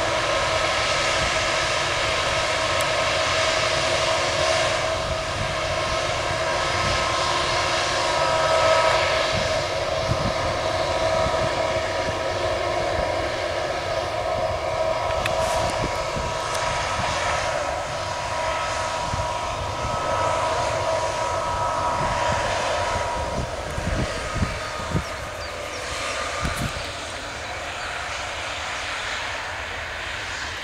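Airbus A220-300's Pratt & Whitney PW1500G geared turbofans at taxi power, a steady whine made of several held tones over a low rumble, easing slightly near the end as the jet moves past.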